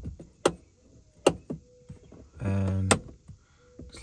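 A small screwdriver prying at the plastic rear-deck speaker cover of a BMW, giving four sharp plastic clicks as the cover's tabs are popped loose. A short hummed vocal sound comes about halfway through.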